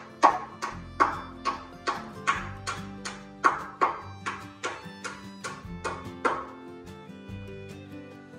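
Steel hammer striking a pry bar about two and a half times a second, each blow ringing briefly, driving the bar in to pry a wooden wall brace off the studs; the blows stop about six seconds in. Background music plays underneath.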